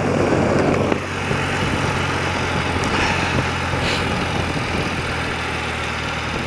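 A 30-year-old BMW motorcycle engine running steadily at cruising speed under a constant rush of wind and road noise. The rush is louder for about the first second.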